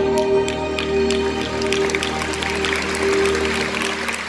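Saxophone and live band holding the closing note of a slow song over a low bass chord, while audience applause breaks out and grows steadily denser.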